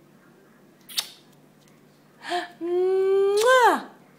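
A sharp click about a second in, then a baby's long, high-pitched drawn-out 'aah' vocalization. It holds one pitch for about a second, then rises and falls away near the end.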